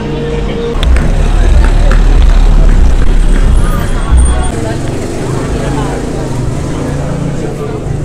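Busy city street ambience: a low traffic rumble for the first few seconds, then background voices of passers-by.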